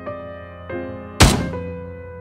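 Solo piano music with single notes struck every half second or so. About a second in, one loud, heavy thunk cuts across it.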